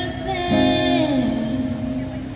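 A young woman singing a song with acoustic guitar, amplified through a small street speaker. She holds long notes, and one slides down in pitch about halfway through.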